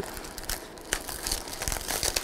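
Thin foam packing wrap and the plastic bag inside it being unfolded by hand, crinkling and rustling in quick, irregular crackles.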